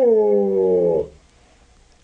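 A female gray wolf howling: the end of one long howl, its pitch falling before it stops about a second in. The howl is a call of communication, asking where her pack is.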